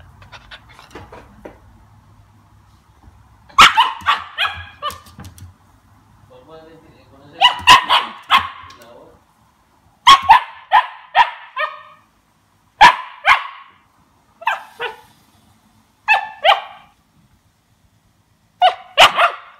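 Two-month-old Siberian Husky puppy barking: short, high, sharp barks in about six quick bouts of two to four, starting a few seconds in.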